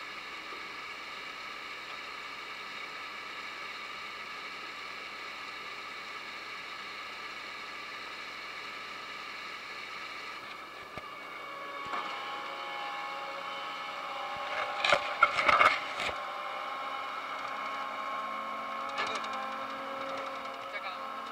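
Potato harvester running, with its conveyor and drive giving a steady whine; the tone shifts lower partway through. About fifteen seconds in comes a short burst of loud clattering knocks.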